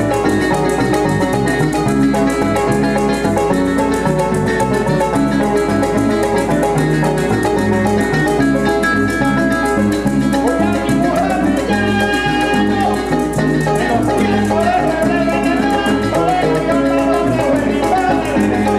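Llanero folk music played by an ensemble: harp and other plucked strings over a steady, quick rhythm, with maracas.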